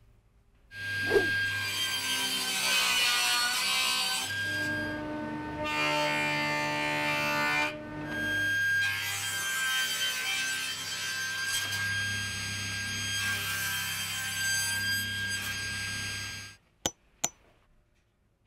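Table saw running with a steady high whine and low hum as it cuts wood, in several abruptly joined stretches. The sound cuts off suddenly near the end, followed by two sharp clicks.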